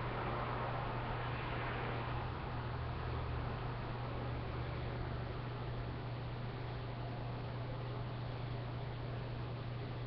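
Steady low hum and hiss of background noise, which the owner puts down to traffic outside, with a soft rustle in the first couple of seconds.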